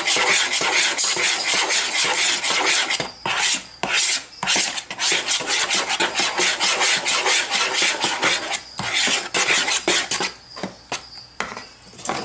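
A spoon stirring and scraping a thick, smoothie-like mix of fruit, yogurt and supplement powders in a plastic mixing bowl, in rapid strokes. There are a couple of short breaks, and the stirring grows quieter and sparser near the end.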